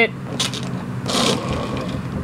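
Plastic Transformers Bumblebee Camaro toy launched by pressing its Energon Igniter: a sharp click about half a second in. Around a second in comes a short rattling whir as the toy car shoots forward across a cardboard box.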